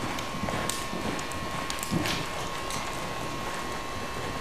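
Faint hoofbeats of a Welsh pony under saddle moving over sand arena footing, under a steady background hiss.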